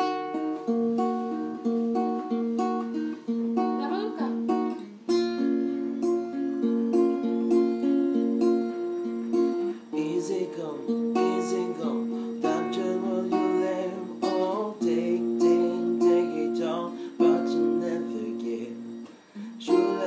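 Acoustic guitar strummed in chords, with short breaks between phrases about five, ten and nineteen seconds in.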